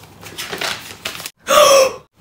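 A woman takes a long sniff with her nose in an open book, smelling its pages. After a brief silence comes a loud, short, voiced gasp of shock.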